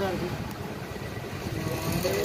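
A vehicle engine running, a low steady rumble, in a pause between a man's words; his voice comes in briefly at the start and again near the end.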